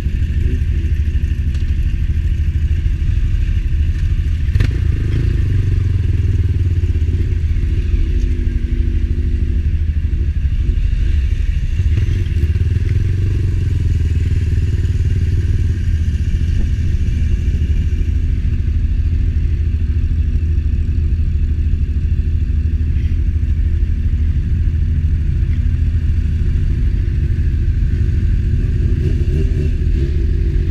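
Motorcycle engine running at low speed among other motorcycles, its note shifting a little as the throttle changes, over a loud steady low rumble.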